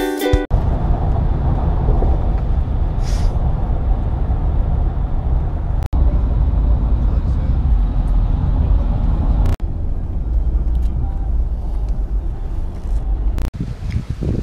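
Steady low road and engine rumble inside a moving car's cabin, broken by a few sudden short dropouts.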